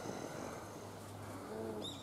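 Faint outdoor ambience with a small bird chirping near the end, after a faint short low call about a second and a half in.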